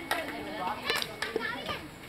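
Voices of several people chatting and calling to one another, with a few sharp knocks of shovels striking the earth.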